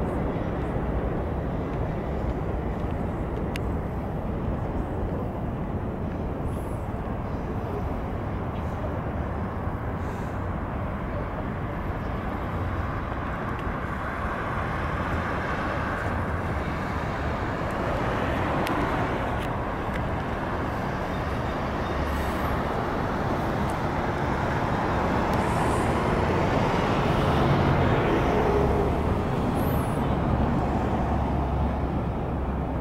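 City road traffic: a steady hum of cars, with vehicles passing that swell louder around the middle and again near the end.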